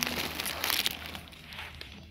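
Clear plastic film wrapping on a packaged folding storage box crinkling as it is handled, loudest in the first second.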